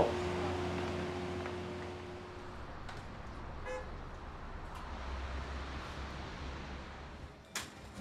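Quiet city street ambience: a low traffic rumble, with one short, distant car horn toot a little before halfway. A couple of sharp clicks come near the end.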